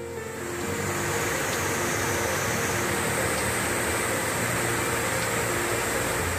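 Steady rushing water from a small stream cascading over rocks, swelling in over the first second, with soft background music faintly beneath it.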